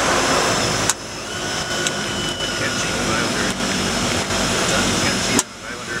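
Twin turboprop engines and propellers of a small commuter aircraft running after touchdown, heard from inside the cockpit as a steady drone with a constant high turbine whine. Two sharp clicks, about a second in and near the end, are each followed by a sudden dip in level.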